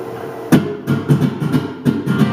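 Acoustic guitar played live, with a few uneven opening strokes starting about half a second in as the song gets going.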